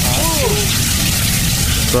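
Steady rushing roar of a large fire burning out of a burst 44-gallon drum, a flame the onlookers take to be fed by escaping gas or fuel rather than burning by itself. A short voice sound comes just after the start.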